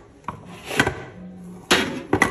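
Kitchen containers being handled on a countertop: a light click, then two sharp knocks about a second apart as plastic storage boxes are moved.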